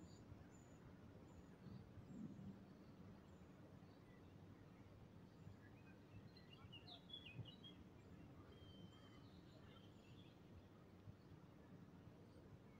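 Near silence: faint outdoor ambience, with a few faint bird chirps about halfway through.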